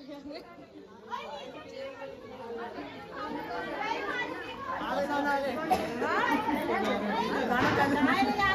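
Several people talking over one another in a lively group, the voices growing louder toward the end.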